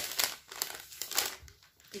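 Empty plastic snack bag crinkling as it is handled, a quick run of crackling rustles that dies down after about a second and a half.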